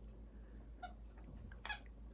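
Two short, faint squeaks from the squeaker inside a plush dog chew toy as a puppy bites it, the second, near the end, louder than the first.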